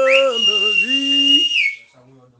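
A high whistle note glides up, holds steady for about a second and a half, then drops off, over a man's voice holding sung notes; both stop shortly before the end.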